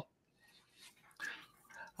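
Near silence between speakers on a video call, with two faint breathy sounds from a person, a little past halfway and just before the end.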